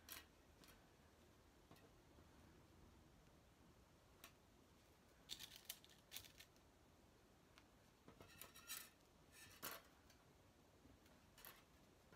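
Near silence broken by scattered faint clicks and brief rustles of hands pinning a Velcro strip onto a flannel cover and handling a metal seam gauge, with small clusters in the middle and about two thirds of the way in.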